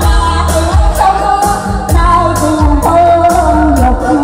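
A woman singing a Vietnamese pop song into a microphone through a PA, over a keyboard backing with a steady beat.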